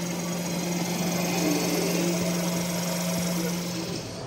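Electric motor drive of an International 30VISW big-game reel running under power and winding line, a steady electric hum that cuts off near the end.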